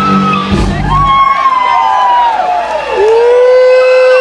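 Live rock band at the end of a song: the band's low sustained chord stops about a second in, leaving high sustained notes that slide down in pitch, then one note held steady to the end.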